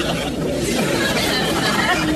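Indistinct chatter of several voices talking at once, no single speaker clear.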